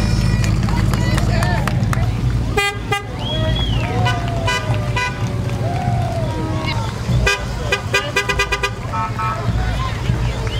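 Parade street noise: a steady low vehicle engine rumble with scattered voices from onlookers. Short horn toots sound about three seconds in, then in a quick run of honks between seven and nine seconds.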